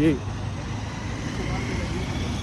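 Outdoor street background: a steady low rumble of road traffic with wind buffeting the microphone.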